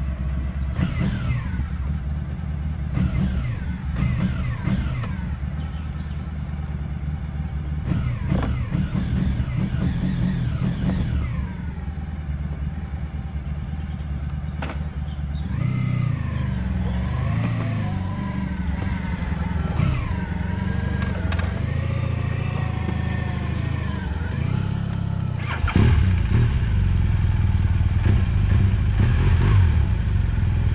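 Large touring motorcycle on low-speed manoeuvres, its engine pitch rising and falling again and again as the throttle opens and closes. It gets louder near the end as the bike comes close.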